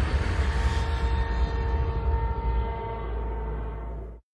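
Closing score of a TV promo: a deep rumble under steady held tones, easing down slightly toward the end.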